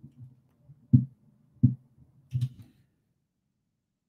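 Mostly quiet room with three short, soft low thumps less than a second apart, one of them with a brief spoken "okay".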